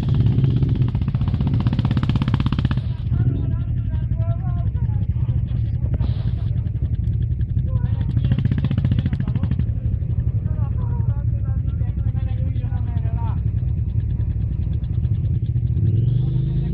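Enduro motorcycle engines running: a steady low engine drone throughout, with revs rising and falling as bikes ride up the dirt trail.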